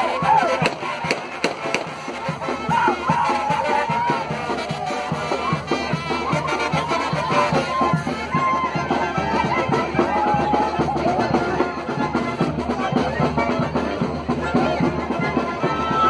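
Live brass band dance music with drums, played loud and steady over crowd noise, with sharp cracks in the first couple of seconds.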